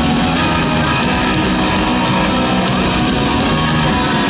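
Live rock band playing loudly through a stadium sound system: electric guitars and drums at a steady, full level.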